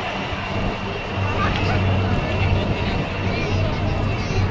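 Helicopters flying past overhead, a steady low rotor and engine sound under the chatter of a large crowd.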